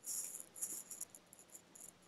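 Faint, high-pitched scratchy rustling in short spurts, strongest in the first half second, picked up by a video-call microphone: a small movement or rub near the mic.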